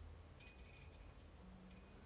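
Near silence broken by a light clink that rings briefly about half a second in, and a second, shorter clink near the end: a small hard object, such as a paintbrush, tapping glass or metal.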